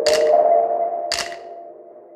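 Background electronic music: held synth notes with a sharp percussive snap about once a second, two hits in all, fading away near the end.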